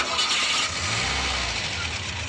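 A passing vehicle: a sudden, loud rush of road noise with a low rumble underneath, setting in as the music cuts off.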